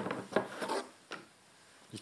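Hard plastic RC crawler parts being handled and rubbed against each other: a few short clicks and a scrape in the first second, then quiet.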